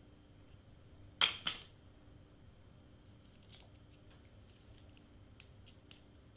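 Two quick scraping rustles about a second in, then a few faint clicks and rustles: a hot glue gun and a rolled cardstock flower being handled during gluing.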